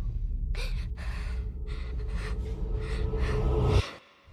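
A young woman panting heavily, about two hard breaths a second, over a low rumbling drone with a steady held tone that swells slightly. Everything cuts off suddenly just before the end.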